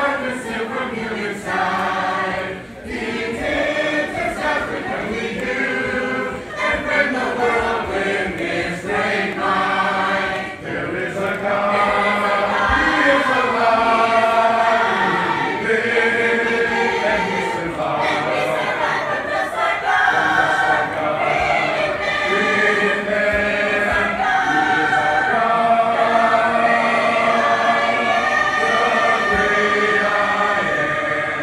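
A church choir singing a hymn unaccompanied, in several-part harmony, steadily throughout.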